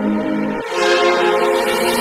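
Background electronic music: held synthesizer chords that shift to a new chord about halfway through.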